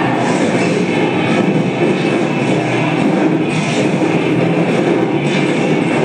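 Loud rock music from a film soundtrack playing over a hall's speakers, heard through the room. It runs steadily, with no break.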